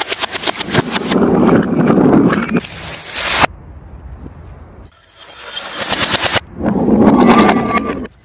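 Plastic bottles and containers being crushed: loud, dense crackling and popping of plastic in one burst of about three seconds, a short lull, then a second burst of about three seconds.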